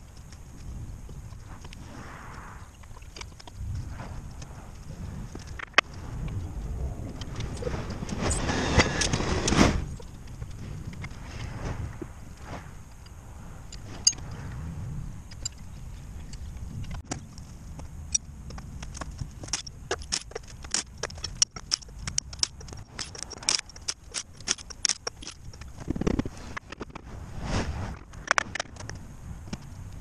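Metal tools and steel hub parts clinking and knocking as a truck's front wheel hub is taken apart, with the clicks coming thicker in the second half, over a low rumble. About eight seconds in there is a louder rush of noise lasting about two seconds.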